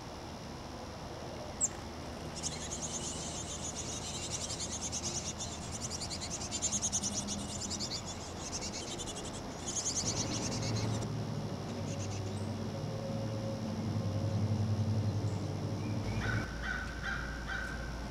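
Chickadee nestlings inside a nest box begging: a rapid, high, buzzy chatter in long bursts while a parent is at the entrance hole. After that, a lower pulsing buzz takes over for several seconds.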